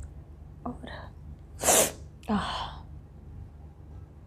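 A woman sneezing once, sharply, about two seconds in, set off by sniffing ground black pepper. A quick breath in comes about a second before it, and a second, breathier burst follows straight after.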